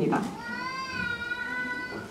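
A single high-pitched, drawn-out cry, rising slightly and then falling, about a second and a half long.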